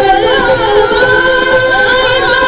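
Devotional kirtan singing: a lead male voice and a group of men singing a long, held melody together at full voice.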